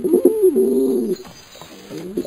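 Domestic pigeon cooing: one drawn-out coo that rises and then falls in pitch over about the first second, followed by a short pause.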